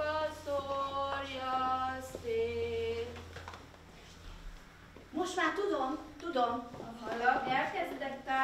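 A woman singing a slow, sad song in long held notes, falling step by step, for the first three seconds; after a short lull, a voice comes back about five seconds in, swooping widely up and down in pitch.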